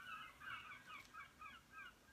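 Faint, quick run of short bird calls, several a second, each call dipping slightly in pitch.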